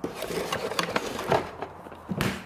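Rummaging through a case by hand: objects scraping, rubbing and clicking against each other in an irregular run of small knocks and rustles.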